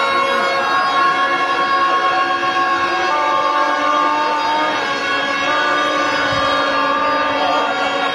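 Several horns sounding together in long, steady, overlapping notes at different pitches, with no break.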